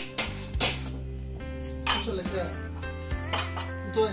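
Several sharp, irregularly spaced clinks of kitchenware knocking together, over steady background music.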